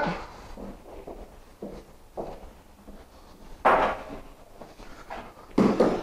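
Handling an e-track cargo strap: its metal end fitting clinks and the webbing rustles, with a few scattered light knocks. The loudest is a brief clatter about two-thirds of the way in.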